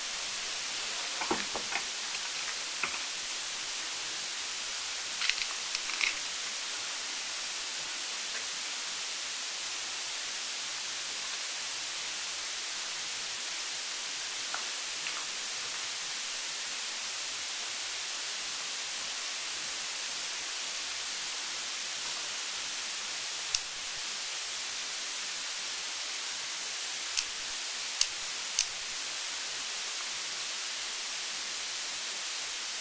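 Steady high hiss throughout, with a few short clicks and taps: a cluster in the first few seconds and three or four more near the end.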